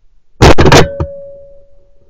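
A 12-bore shotgun fired at a woodpigeon and recorded by a gun-mounted camera, so the shot is very loud and clipped. It is followed by a sharp click and a steady ringing tone that fades away.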